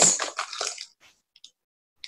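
Crinkly plastic rustling of a wrapped cereal bar being pulled out of a bag, an irregular crackle lasting about the first second and fading.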